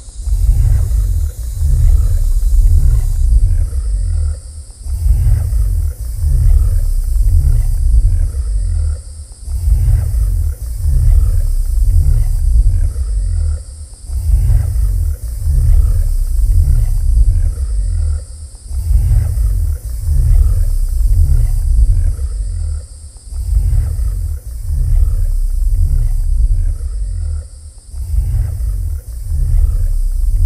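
Live-coded electronic music: deep pulsing low bass with a grainy growl and a hissy high wash, looping in a cycle of a few seconds with regular dips in level. It comes from pitched-shifted sample layers and a low sine-wave bass note.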